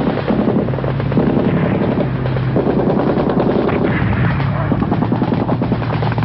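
Rapid automatic gunfire, dense and continuous, over a steady low hum.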